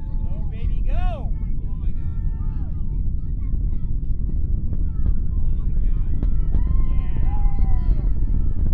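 Starship Super Heavy booster's 33 methane-fuelled Raptor engines during ascent: a loud, deep, continuous rumble with crackles through it. People whoop and cheer over it a couple of times.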